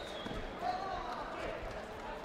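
Voices calling out in a large sports hall during a taekwondo bout, with a few dull thuds of feet and kicks on the mat and body protectors.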